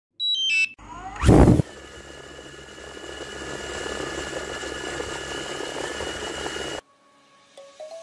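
Electronic intro sound effects: a quick run of stepped beeps, a loud whoosh about a second in, then a steady hissing sound with a few held high tones that cuts off suddenly near the end.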